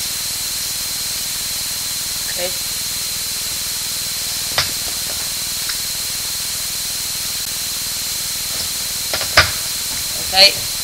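Steady background hiss of the recording with a thin, constant high whine in it, broken by a couple of brief clicks about halfway and near the end.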